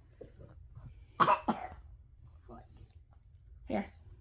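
A person coughing, two quick harsh coughs about a second in.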